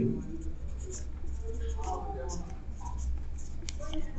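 Marker pen writing on a whiteboard: quiet strokes with faint short squeaks as the letters are drawn.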